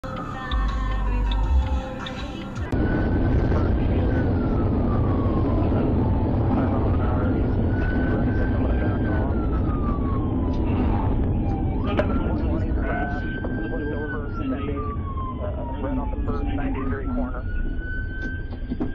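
A siren wailing, its pitch rising quickly, holding, then falling slowly about every five seconds, over a loud steady rumble of vehicle and road noise. A few sharp ticks come in the second half.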